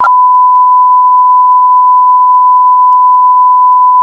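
Loud, steady test-pattern tone: a single unwavering beep at one pitch, of the kind broadcast with TV colour bars, starting suddenly.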